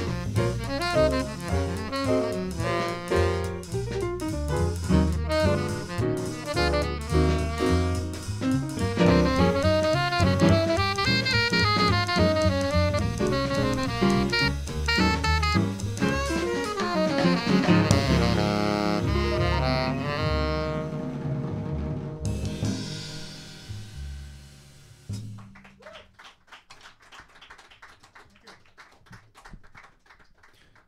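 Live jazz quartet of saxophone, upright piano, double bass and drum kit playing the closing bars of a swing tune. The band stops a little over twenty seconds in, and the last notes die away over a few seconds.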